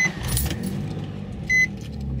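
A Nissan 350Z's 3.5-litre V6 being started: the starter cranks with a rough low rumble, and the engine catches and settles into a steady idle near the end. Short high dashboard chime beeps sound at the start and again about a second and a half in.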